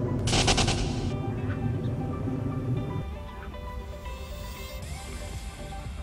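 Low rumble of a plane passing overhead, mixed with an added sound effect: a short, rapid rattling burst near the start, then steady musical tones held to the end. The rumble drops away sharply about halfway through.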